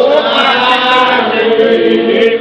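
A group of Spiritual Baptist worshippers chanting together, several voices singing a slow, hymn-like chant.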